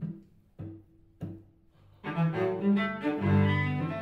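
Solo cello: three short plucked notes about half a second apart, each dying away quickly, then from about two seconds in a bowed melody of sustained notes.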